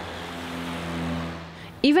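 Car passing on a city street, its engine hum and tyre noise swelling to a peak about a second in and then fading.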